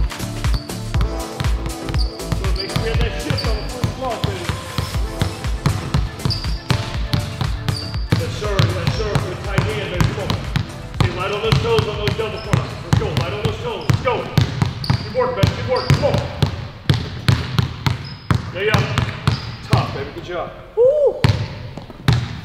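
Basketballs bouncing on a hardwood gym floor in quick, repeated dribbles and passes. Background music plays under the first part, and voices are heard through the latter part.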